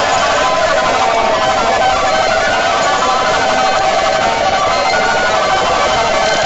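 Music: a loud, dense, steady mass of many overlapping tones, with little bass.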